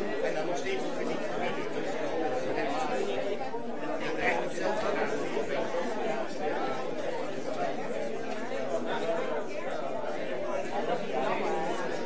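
Crowd chatter: many people talking at once in small groups, an indistinct, steady hubbub of overlapping voices in a hall.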